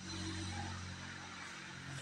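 A faint steady low hum over an even background hiss.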